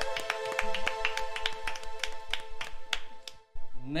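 A few people clapping by hand, quick irregular claps for about three seconds that stop shortly before the end, over a steady held musical tone.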